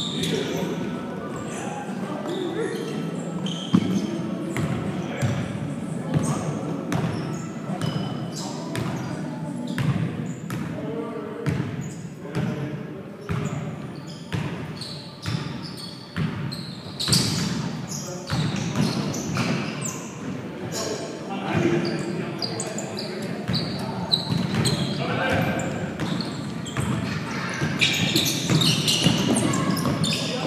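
Basketball bouncing on a hardwood gym floor in play, a run of sharp impacts throughout, echoing in a large gym, with players' voices calling out.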